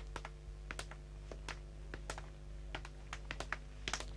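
Faint, irregular light clicks, about three or four a second, over a steady low hum.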